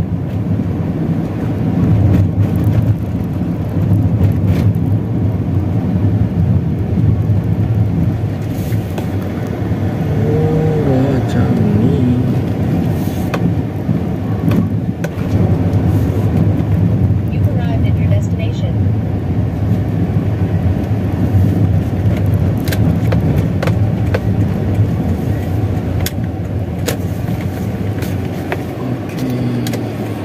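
Inside a moving car's cabin: steady low engine and tyre hum while driving on city roads, with a few light clicks.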